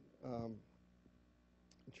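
A man speaking into a lecture-hall microphone says one word, then pauses, leaving quiet room tone, and resumes talking near the end.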